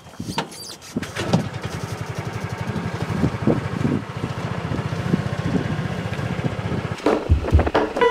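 Small vehicle engine running steadily with a rapid low putter, heard from on board. A few knocks come near the end.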